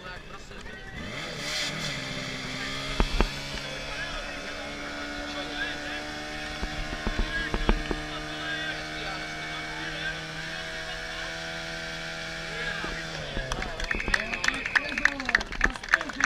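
Portable fire pump engine revving up about two seconds in and running at a steady high speed under load while it pumps water to the hose lines, then dropping back near the end. Clapping and shouts follow in the last couple of seconds.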